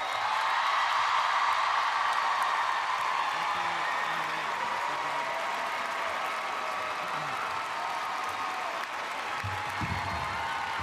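Audience applause that starts all at once, is loudest in the first couple of seconds and slowly tapers off.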